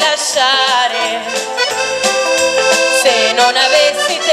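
Live band playing an instrumental break: an accordion carries the melody over a steady percussion beat.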